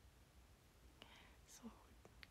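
Near silence: room tone, with a faint whispered murmur from a woman about one and a half seconds in.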